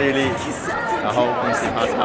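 Several people talking and chattering in a large indoor hall.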